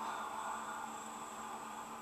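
A man's long exhale, one breathy breath blown out that starts suddenly and dies away over about two seconds.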